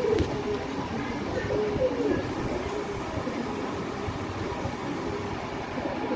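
Domestic pigeons cooing: low, wavering coos that come and go over a steady low background rumble.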